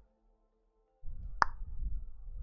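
A single sharp mouth click close to the microphone, about a second and a half in, after a second of near silence.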